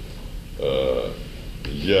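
A man's voice: a drawn-out hesitation sound, a held "eh", about half a second in, then his speech picks up again near the end.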